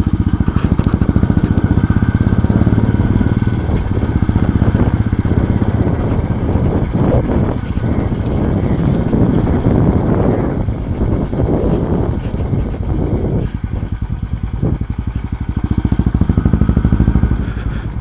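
Royal Enfield motorcycle engine running steadily at low riding speed, picked up by a phone mounted on the rider's helmet, with a brief easing-off about two-thirds of the way through.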